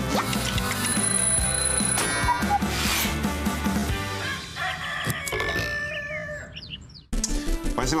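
Jingle music of a TV show's sponsor ident, fading out over the last few seconds before studio sound cuts in suddenly about seven seconds in.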